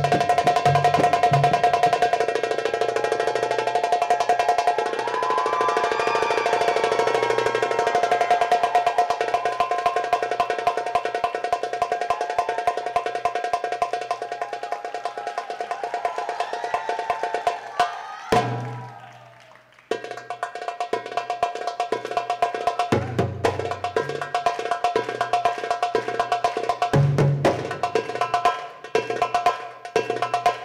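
Live Arabic band music: fast, dense frame-drum and riq rhythm with low drum strokes under a melody and sustained held tones. About 18 seconds in the music breaks off for under two seconds, then resumes.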